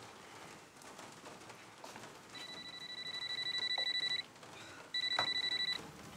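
Phone ringing with an electronic, rapidly warbling ringtone for an incoming call: two rings, the first about two seconds long and growing louder, then a short gap and a shorter second ring.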